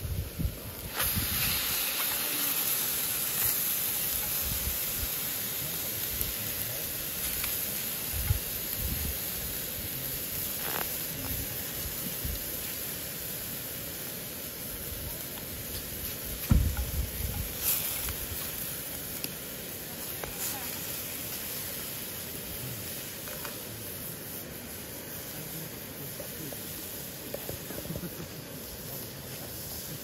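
Meat sizzling in a black iron frying pan over a portable gas stove: a steady frying hiss that swells about a second in. A few knocks about halfway through as chopsticks turn the meat.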